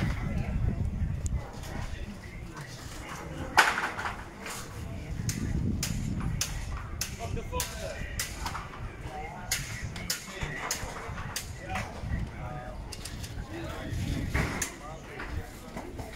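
Open-air market ambience: indistinct voices of people around the stalls, a low rumble that comes and goes, and scattered sharp clicks and knocks, the loudest about three and a half seconds in.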